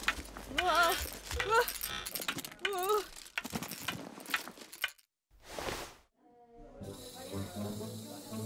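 Cartoon soundtrack: a character's wavering, warbling non-word vocal sounds over quick clicking effects, then a short whoosh a little after five seconds in, followed by a low background hum as the scene changes.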